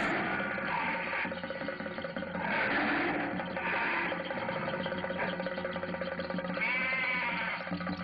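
Live sound of a Tholpavakoothu shadow-puppet performance: a wavering chanted voice over a steady hum, with brief swells of noise in between.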